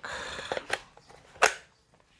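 Plastic scraping and clicks as a 20 V battery pack is fitted onto a cordless brushless grass trimmer's motor housing: a short scrape, a few light clicks, then one sharp click about a second and a half in as it seats.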